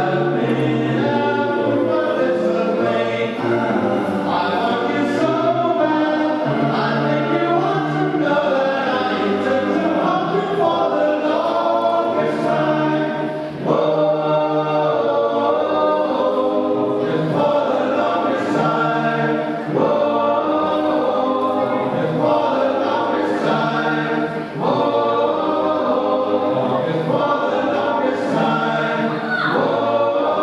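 Live music from a group of voices singing together as a choir, sustained and continuous, with brief breaks between phrases.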